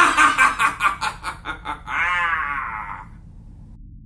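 A man's theatrical villain laugh: a quick run of 'ha-ha' pulses, then one long wavering held note that fades out about three seconds in.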